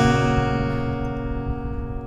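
Acoustic guitar's final strummed chord ringing out and slowly dying away at the end of a song.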